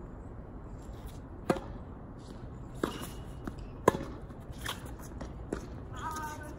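Tennis rally: a ball being struck by rackets and bouncing on a hard court, a run of sharp pops about a second apart, the loudest about four seconds in.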